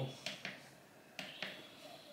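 A few short, sharp clicks from pressing the control buttons on a Halo bassinet, working its volume control.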